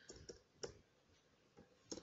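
Faint computer keyboard keystrokes: a handful of soft, scattered key clicks.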